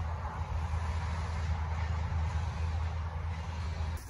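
Steady low drone of an engine on the tree-clearing machinery, with an even rushing hiss above it.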